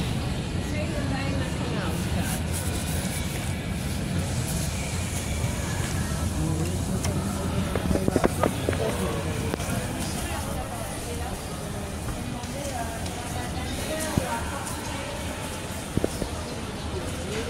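Busy shopping-mall ambience: a steady low rumble with indistinct background voices, and a short cluster of sharp clicks about halfway through.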